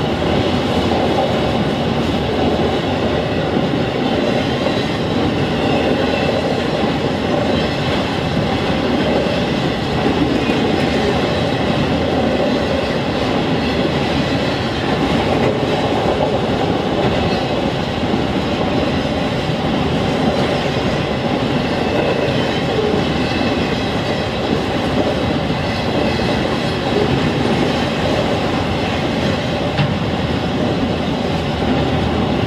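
Freight train of autorack cars rolling past at a grade crossing: a steady, loud, unbroken noise of steel wheels running on the rails as car after car goes by.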